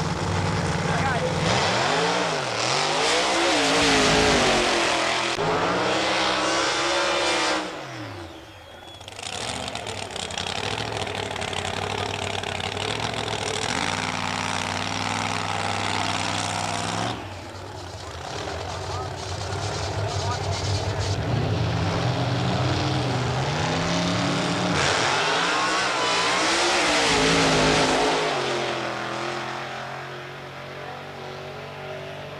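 Drag racing cars' engines revving up and down in repeated sharp blips, with stretches of steadier running and noise between. The sound changes abruptly twice, about 8 and 17 seconds in.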